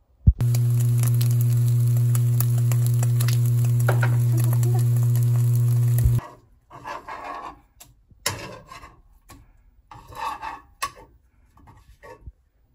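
Egg frying in a nonstick pan, sizzling and crackling over a steady low electrical hum, which the cook remarks is starting to burn. The frying starts abruptly just after the start and cuts off about six seconds in. It is followed by scattered clinks, knocks and scrapes of utensils and dishes.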